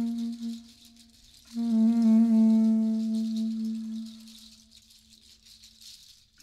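Saxophone holding two long, low notes: the first fades within half a second, the second comes in about one and a half seconds in and dies away slowly. A hand shaker rattles steadily under them.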